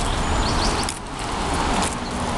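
Street traffic noise: a car driving along the road, a steady even rush of tyre and engine sound.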